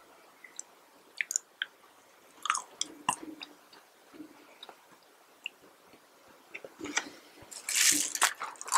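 Close-miked chewing of sauce-dipped McDonald's french fries: soft, wet mouth sounds and small clicks, with a louder bout of biting and chewing near the end.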